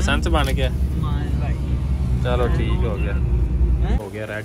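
Steady low rumble of a moving car heard from inside the cabin, with people talking over it; the rumble stops abruptly at the very end.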